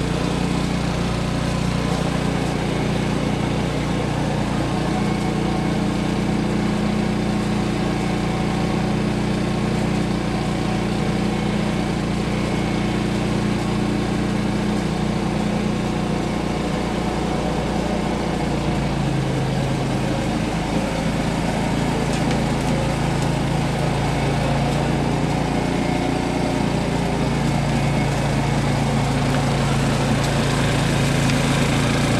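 Petrol cylinder lawn mower engine running steadily with a scarifier cassette fitted. A little past halfway its note drops lower and holds there.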